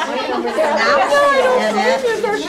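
Several women talking over one another: overlapping conversational chatter in a room.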